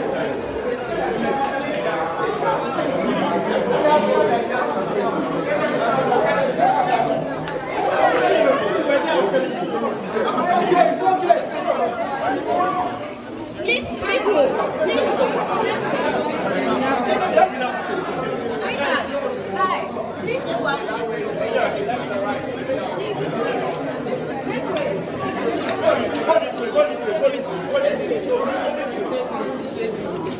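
Crowd chatter: many people talking at once in a packed indoor lobby, a steady babble of overlapping voices.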